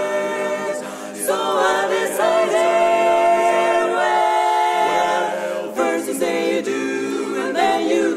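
Mixed group of eight voices, four women and four men, singing a cappella in close barbershop harmony. The singers hold sustained chords that change every few seconds.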